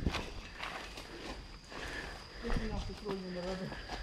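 Footsteps of people walking on a dirt trail through undergrowth, with a short, faint voice about two and a half seconds in.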